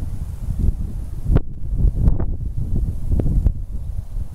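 Wind buffeting the microphone: a low, uneven rumble in gusts, with a few stronger gusts.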